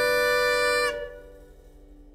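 The final held note of a Scottish folk tune on bagpipes, sustained over the band, cuts off about a second in with a short downward slide. A lower tone lingers and fades away.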